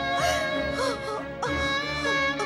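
A woman moaning in pain in short, rising and falling cries over dramatic background music with long held notes.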